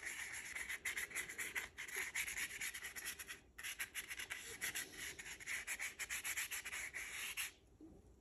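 Small paintbrush brushing paint onto cardboard in quick, repeated short strokes. There is a brief pause about halfway through, and the strokes stop shortly before the end.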